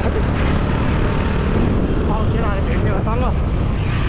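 Steady low rumble of street traffic, with motorcycles passing close by.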